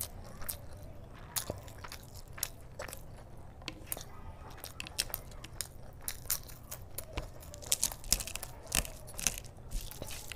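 Close-miked eating of curry-soaked rice by hand: chewing with many short crisp crunches and wet mouth clicks, the loudest cluster about eight to nine seconds in.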